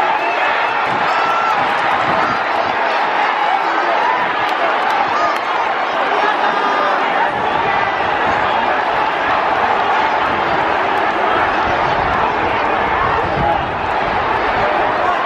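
Large racecourse crowd chattering, many voices overlapping in a steady, loud murmur.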